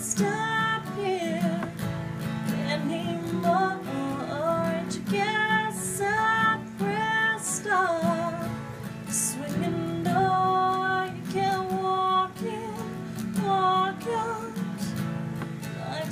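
A woman singing a country song with vibrato over strummed acoustic guitar chords.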